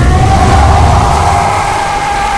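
Film soundtrack: a man's long, sustained scream over a loud, heavy low rumble as he bursts up out of a tank of water.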